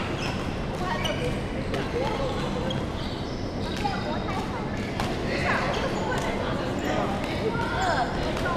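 Busy indoor sports hall with a wooden floor: short sharp knocks and thuds at irregular intervals, echoing in the large room, with voices in the background.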